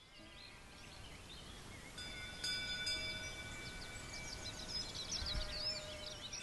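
Outdoor ambience with many birds chirping and a steady ringing tone that sets in about two seconds in and swells again near the end.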